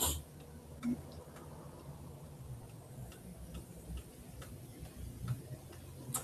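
A few faint, irregular clicks over quiet room tone. The loudest comes right at the start and another about a second in.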